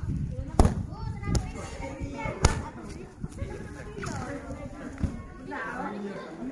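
Kicks smacking into a hand-held padded kick shield: two sharp hits about two seconds apart, with a couple of lighter thuds later, and voices calling out in between.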